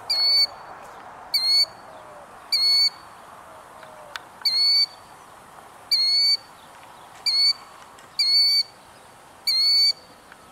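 Killdeer calling over and over: about eight loud, high-pitched calls, each a fraction of a second long, coming roughly once a second.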